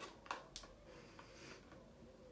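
Near silence: room tone, with two faint clicks in the first half second as a cosmetic jar and its cardboard box are handled.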